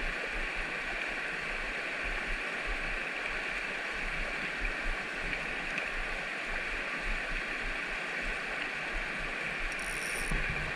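Steady rush of a rocky mountain creek, the water running fast over stones in shallow riffles, an even, unbroken sound.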